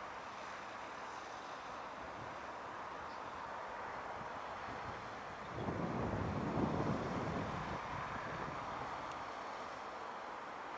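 Wind gusting on the microphone about halfway through, a low buffeting swell that dies away over about two seconds, over a steady distant hiss of outdoor background noise.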